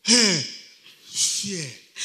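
A preacher's voice making two short exclamations that fall in pitch, one at the start and one about a second and a half in, with a breathy, sigh-like sound between them.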